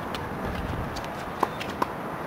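Two sharp tennis-ball impacts about one and a half seconds in, less than half a second apart, with a hollow ring: a ball bouncing on the hard court and being struck by a racket during a rally.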